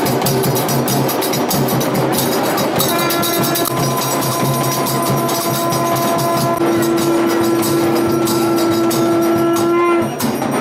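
A conch shell (shankh) blown in one long, steady horn-like note, starting about three seconds in and growing louder a little past halfway. Under it, temple drums and percussion keep up a fast, steady beat throughout.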